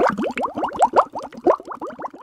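Bubbling water sound effect: a rapid stream of short rising blips, several a second, growing fainter near the end.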